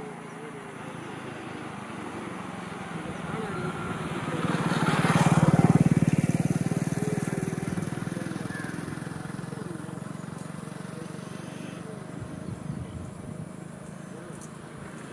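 A motor vehicle passes by: its engine grows louder for a few seconds, is loudest just before the middle, then slowly fades away.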